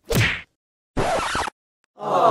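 Cartoon punch sound effect: one sharp whack at the start, followed about a second in by a short record-scratch sound effect lasting about half a second.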